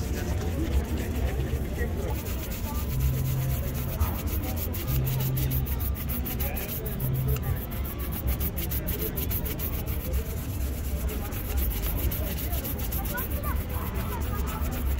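Shoe-shine brushes rubbing over a black leather shoe in quick, repeated strokes, over a low traffic rumble.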